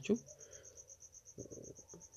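High, evenly pulsed chirping, several pulses a second, of the kind a cricket makes, with a short low murmur a little past halfway.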